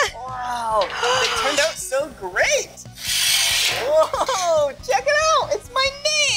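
Wordless voice exclamations, sliding up and down in pitch, with a brief scraping noise about three seconds in, as cut sheet-metal pieces are lifted off the laser cutter's table.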